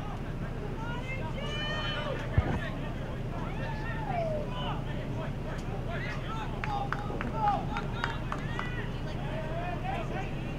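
Soccer players shouting and calling to each other across the field over a steady low hum, with one sharp thump about two and a half seconds in.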